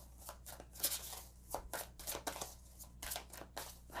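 A deck of oracle cards being shuffled by hand: a quick, irregular run of soft card clicks and slaps.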